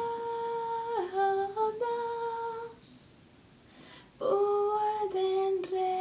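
A woman's voice singing unaccompanied, holding long, steady notes that step downward in pitch. About three seconds in there is a pause of a second or so, then she takes up another long held note.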